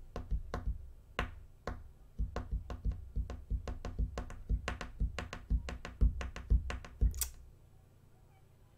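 A rapid, irregular run of knocks and taps with deep thuds, a few a second, ending with one sharp click about seven seconds in.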